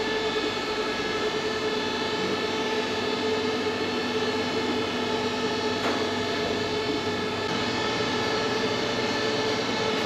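Steady drone of print-shop machinery running, a blend of several constant tones that holds the same pitch and pace throughout.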